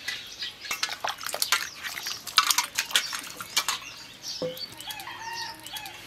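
Stainless-steel bowls and plates clinking and knocking against each other in a run of sharp clicks while vegetables are washed, with birds chirping briefly near the end.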